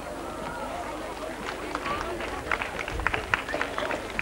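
Scattered applause from an outdoor crowd. A few hands start clapping about a second and a half in and go on for a couple of seconds, over a low murmur of voices.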